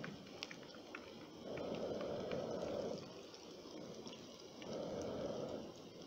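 Bread cutlets shallow-frying in hot oil: a steady sizzle with scattered small crackles and pops. A duller rushing sound swells twice, about a second and a half in and again near the end.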